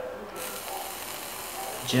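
Genesis rebuildable atomizer's coil sizzling steadily as it is fired, vaporizing e-liquid on the wick. The sound starts about a third of a second in.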